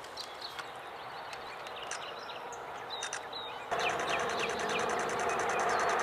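Nikon Z9 firing a continuous burst at 20 frames a second: a rapid, even stream of its simulated electronic shutter sound starting about two-thirds of the way in, over faint outdoor birdsong.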